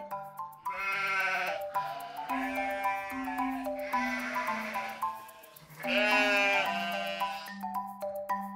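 Sheep bleating: four quavering bleats about a second apart, the last one longer and louder, over gentle background music.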